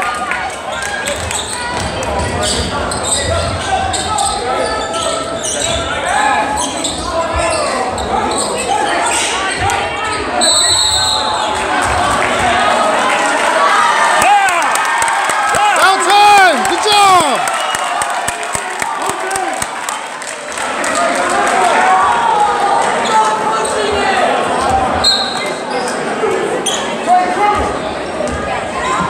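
Basketball gym game noise: many spectators' voices and a ball dribbling on the hardwood court. A referee's whistle blows once, briefly, about ten seconds in, before free throws are set up.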